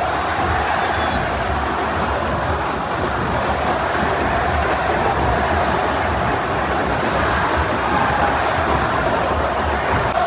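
Crowd noise from a packed football stadium: the massed voices of thousands of supporters, steady and dense throughout.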